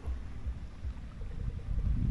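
Wind buffeting the microphone outdoors, a low, uneven rumble that rises and falls.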